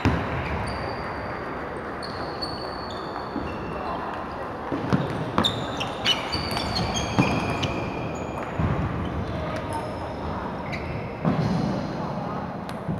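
Table tennis rally: a celluloid-type ball clicking back and forth off paddles and table in quick succession about halfway through, over the steady hubbub of voices and other matches in a large hall. Short high squeaks of shoes on the wooden floor come and go.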